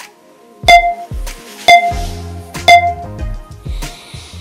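Three short electronic countdown beeps, one a second, from the iMovie app's voiceover recorder counting in before recording starts. A low steady musical sound comes in about halfway under the beeps.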